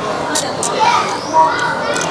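Background voices of other diners in a busy restaurant, children's voices among them, with close-up mouth clicks and smacking as shellfish meat is sucked off the shell.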